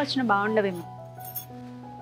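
Background music of sustained tones, with a woman's voice trailing off in the first second and a brief high clink a little past halfway.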